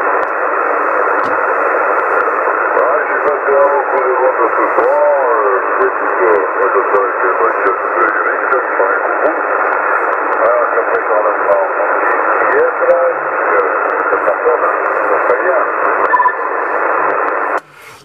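Weak single-sideband voice of a distant CB station on channel 27 coming through a Yaesu FT-450 transceiver, half buried in steady band hiss and squeezed into a narrow, tinny passband; the signal is weak. The received signal cuts off suddenly near the end as the other station unkeys.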